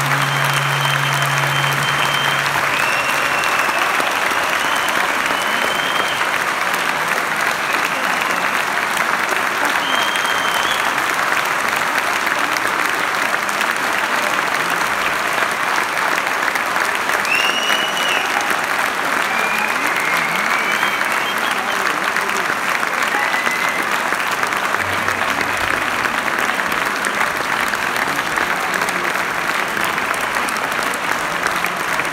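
Large concert-hall audience applauding steadily during the curtain call, with scattered short cheers from the crowd.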